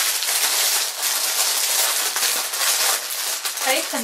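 Cellophane bag crinkling steadily as it is handled, with a short bit of speech near the end.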